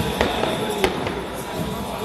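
Three sharp cracks within about a second, the middle one the loudest, over ongoing band music and crowd noise.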